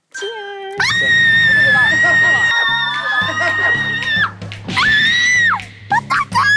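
A long, high-pitched shriek held steady for about three seconds, then a second shorter one that falls away at its end, both over edited background music with a steady bass line. The shrieks are a reaction to sipping bitter gosam-cha (sophora-root tea).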